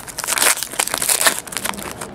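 Foil trading-card pack wrapper crinkling and crackling in a dense run as it is handled and opened.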